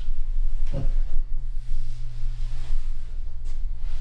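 A steady low hum with a faint hiss behind it, and one short spoken word near the start.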